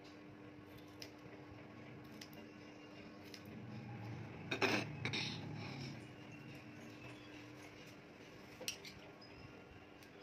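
Metal hairdressing scissors and tools clicking and clinking as they are handled during a haircut, with a few single sharp clicks and a louder cluster of clinks and rustling about halfway through. A faint steady hum runs underneath.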